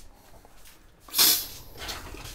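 RV bathroom sink faucet opened on the pumped antifreeze line: a short, loud hissing spurt about a second in as air and antifreeze spit from the spout, then a steady stream into the basin.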